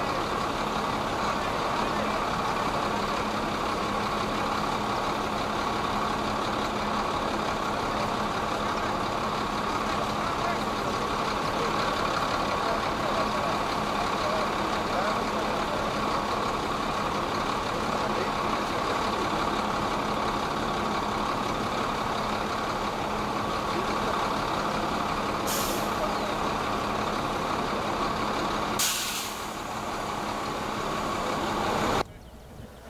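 A heavy vehicle's engine running steadily, with a constant hum. Two short hisses come near the end.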